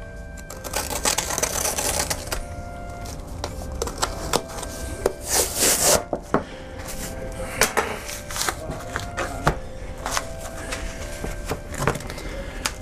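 A knife cutting through the cloth joint on the back of an old Bible's case, with the boards and text block being handled on a wooden bench: scrapes, rubbing and light knocks, with a longer, louder scraping stretch about five seconds in.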